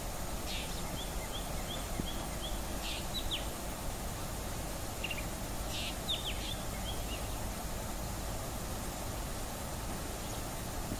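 Black drongo calling: a quick run of short, high notes, then sharp downward-sweeping notes about three seconds in and again about six seconds in, over a steady background hiss.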